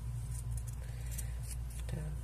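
Scissors snipping through felt backing in several short cuts, trimming around the edge of a glitter appliqué.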